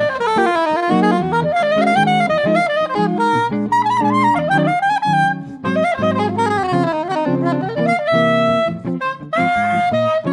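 Soprano saxophone playing a jazz melody of quick rising and falling notes over hollow-body electric guitar chords, settling into a long held note about eight seconds in and another near the end.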